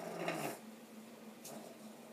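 Supported spindle whirling on its tip in a wooden spindle bowl with an enamel inset, a faint steady hum; this tip and bowl pairing makes a slight bit of noise as it spins.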